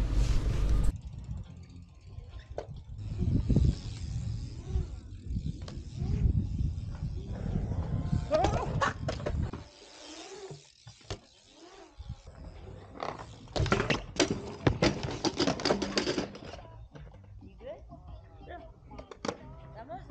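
BMX bikes riding a concrete skatepark bowl: an uneven rumble of tyres rolling on concrete with sharp clacks and knocks, and voices calling out now and then, loudest about 8 to 9 seconds in and again around 14 to 16 seconds.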